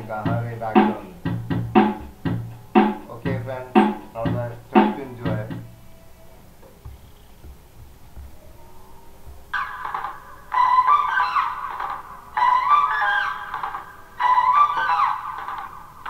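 Electric bass guitar plucked note by note, about two deep notes a second, for the first five seconds or so. After a quieter few seconds, short phrases of a higher melody with gliding pitch take over in the second half.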